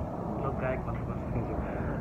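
Quiet, indistinct talking over a steady low background rumble.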